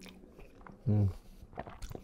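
Close-miked chewing of a mouthful of noodles: scattered short mouth clicks and smacks, a few sharper ones near the end, with a short hummed "mm" about a second in.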